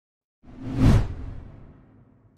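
A whoosh sound effect with a deep low boom under it, swelling up about half a second in, peaking around the one-second mark and fading out, as the animated logo intro ends.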